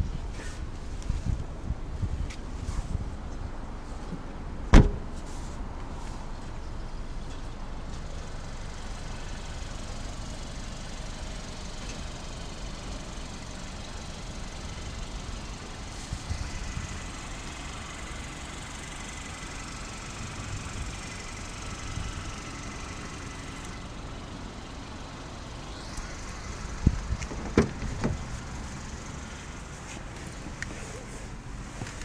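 A car boot lid shutting with one loud thump about five seconds in, followed by low handling noise and a few quieter knocks near the end as a car door is worked.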